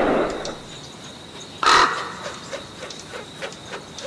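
A crow caws once, loud and short, about halfway through, after the fading tail of a heavy hit. Faint, evenly spaced ticks follow.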